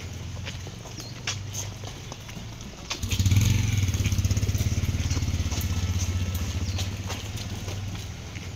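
A motor vehicle engine running close by, growing louder about three seconds in and staying loud with a fast, even throb. Light clicks and scuffs sound over it.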